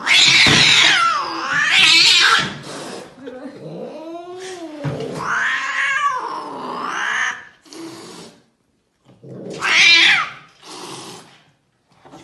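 An upset cat yowling in long, wavering cries, in three bouts: at the start, again about four seconds in, and once more near the end. It is protesting being held down at the vet for a blood draw.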